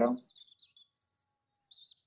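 A bird chirping faintly: quick high wavering trills in the first second, then a short trill again near the end.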